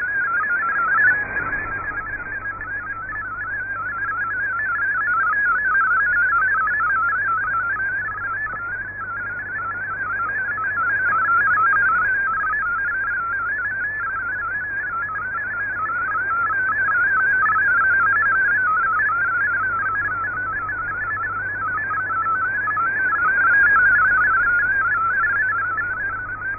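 MFSK32 digital text signal from the Shortwave Radiogram broadcast on 9400 kHz, received on an AirSpy HF+ software-defined radio. It is a fast, continuous warble of hopping beep tones, slowly swelling and fading every few seconds, over a faint low hum. The signal is strong and clean enough that the text decodes perfectly.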